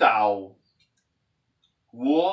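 Speech only: a man says a word, pauses for about a second and a half, then starts speaking again near the end.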